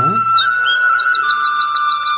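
A small bird calling: a few separate falling chirps, then a quick run of about eight falling notes in the second half.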